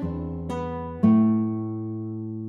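Background music on acoustic guitar: plucked chords ringing out and fading, with a new chord struck about a second in.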